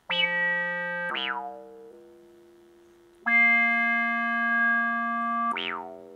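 Homemade Arduino-driven cigar-box synthesizer playing single buzzy notes from its touch-strip keyboard, through the speakers built into the box. There are about five notes with sudden starts, held or fading. Twice, at a note change about a second in and again near the end, its bandpass filter sweeps quickly down from bright to dull, giving a falling 'wow'.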